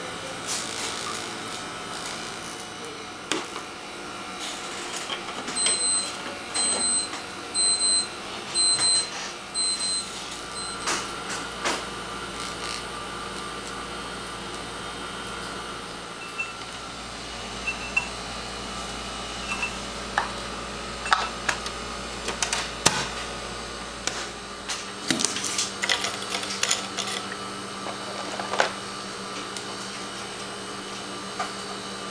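Plastic blood tubes being capped and handled on a lab bench, with small clicks and knocks. About six seconds in come five short high electronic beeps about a second apart. From about 16 to 25 seconds a low steady hum runs: a benchtop vortex mixer mixing the tubes.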